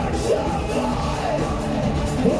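Live dark electro / EBM music played loud through a concert PA: a pounding electronic beat and synth bass, with a man's shouted, distorted vocal over it.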